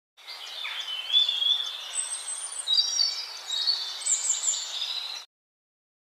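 Small birds singing, many high chirps and whistles over a steady background hiss; the sound cuts off suddenly about five seconds in.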